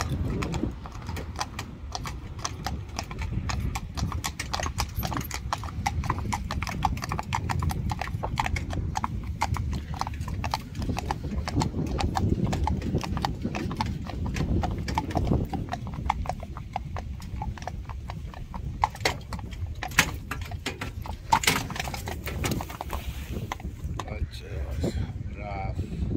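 Hooves of a pair of Friesian horses trotting on asphalt: a quick, steady clip-clop over a low, steady rumble, with a few louder hoof strikes near the end.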